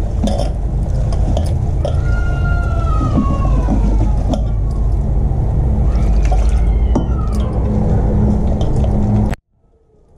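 Wet gram-flour batter squelching as a hand mixes it in a steel bowl, over a steady low hum, with a few faint wavering tones in the background. The sound cuts off suddenly near the end.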